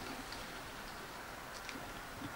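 A child chewing a crispy fried-bread, bacon and egg bite: faint, scattered small clicks of the mouth over low room hiss.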